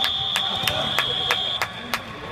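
A steady high-pitched electronic beep, held for about a second and a half, over rhythmic clapping at about three claps a second.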